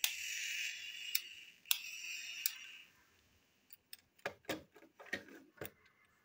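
Plastic parts of a toy train being handled and pulled apart: a rough scraping noise for about three seconds with a few sharp clicks through it, then scattered light clicks and ticks.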